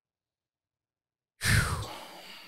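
Dead silence, then about one and a half seconds in a man's loud sigh, a long breathy exhale that fades slowly.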